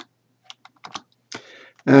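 A handful of separate computer keyboard key presses, short light clicks spaced irregularly, as values are typed into a spreadsheet cell. A man starts speaking near the end.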